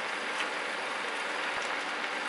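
Chicken and sauce sizzling in a frying pan, a steady hiss, with a couple of faint taps of the spatula and spoon against the pan.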